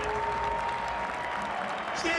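Arena basketball crowd on its feet applauding and cheering, with a single steady held tone over it for the first second and a half.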